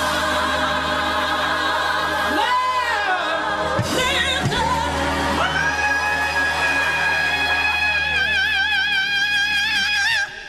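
Gospel choir singing behind a woman lead soloist, who holds one long note with a wide vibrato through the second half.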